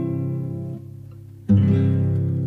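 Acoustic guitar playing: a chord rings and fades, then a new chord is strummed about one and a half seconds in and rings on.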